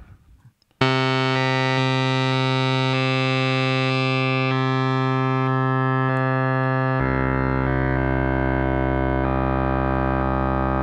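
Moog Muse analog synthesizer playing a held oscillator-sync tone whose brightness and overtones jump in steps about twice a second, as a sample-and-hold LFO randomly sets oscillator 2's pitch. The note starts just under a second in, and a lower note comes in about seven seconds in.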